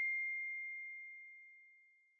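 The fading ring of a single bell-like ding in a logo sting: one clear high tone with faint overtones, dying away and gone about a second and a half in.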